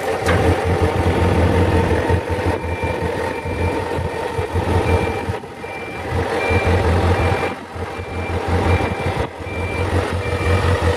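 Kawasaki ZZ-R400's inline-four engine idling steadily. From about two and a half seconds in, a high beep sounds about twice a second over it.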